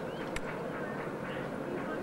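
Short duck-like bird calls over a murmur of voices and a low steady hum, with one sharp click about a third of a second in.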